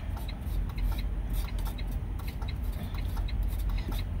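Rapid, steady clicking from the broken-down semi truck, several clicks a second, over a low steady hum.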